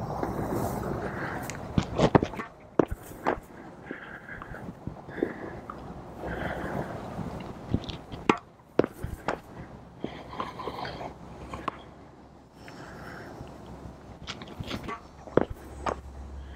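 Tennis ball bouncing on a hard court and struck by the racket on a serve: a series of sharp, short knocks and pops spread through, with a tight group near the middle as the serve is hit, over a steady outdoor background hiss.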